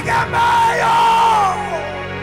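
A man yelling a long, high held cry into a microphone, which falls away about a second and a half in, over backing music.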